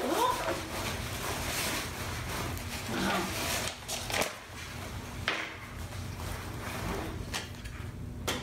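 Rustling and crumpling of thin taffeta hammock fabric and mesh bug net being handled and spread out on a table, with a few sharp clicks.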